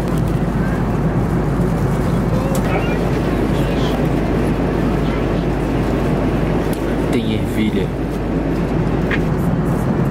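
Steady drone of a jet airliner's cabin in flight, engine and airflow noise, with faint voices mixed in.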